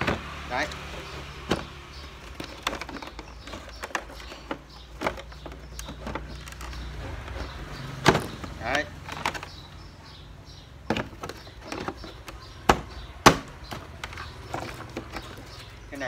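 Handling noise from a cordless power-tool kit: irregular clicks and knocks of plastic tool parts, a charger and cords being moved about in a plastic carry case, over a steady low hum.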